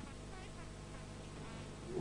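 Steady low electrical hum with faint hiss, and nothing else sounding.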